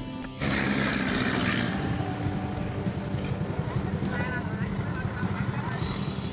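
Background music stops abruptly about half a second in and gives way to an engine running steadily with a fast, rough pulse, with a few faint voices over it.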